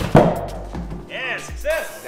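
Ether lit inside a large bias-ply racing tire goes off as a single loud bang right at the start, blowing the tire's bead out onto the wheel rim and seating it. Electronic background music with a beat plays under it throughout.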